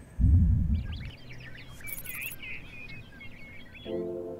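Birds chirping, many short quick calls over about three seconds, after a brief low rumble in the first second.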